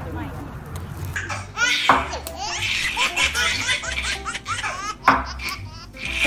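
A baby laughing in repeated bursts, starting about a second and a half in.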